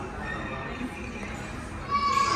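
Steady indoor background ambience of a large public room, with faint distant voices murmuring.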